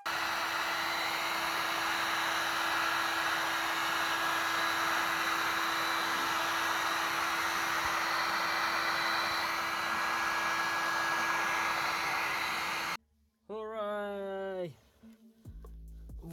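Electric heat gun blowing hot air steadily with a constant hum, softening a plastic automatic-transmission filter. It cuts off abruptly near the end.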